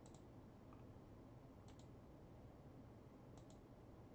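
Faint computer mouse clicks over near silence: three quick double clicks, about a second and a half apart, with a low steady hum beneath.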